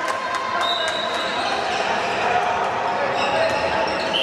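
A handball bouncing on an indoor court floor amid voices in a sports hall, with a couple of brief high-pitched squeaks.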